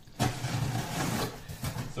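Box cutter slicing the packing tape along the top of a cardboard box, a scratchy tearing noise that is strongest for about a second, then eases off.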